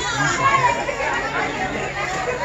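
Party guests chattering, several voices overlapping in a tent full of adults and children, with a faint steady low hum underneath.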